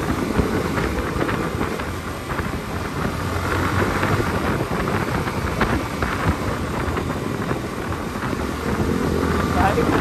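Wind rushing over the microphone of a Yamaha R15 motorcycle ridden at about 50 km/h, with the bike's engine and road noise running steadily underneath.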